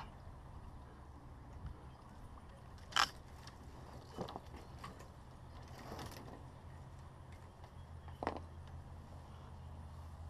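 A few sharp knocks in a small aluminum boat, the loudest about three seconds in, with fainter ones near four, six and eight seconds, over a faint low rumble.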